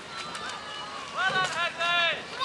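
High-pitched shouting voices, loudest in the second half: people yelling encouragement at a passing rowing crew.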